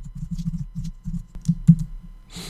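Typing on a computer keyboard: a quick, uneven run of keystrokes as a sentence of text is typed.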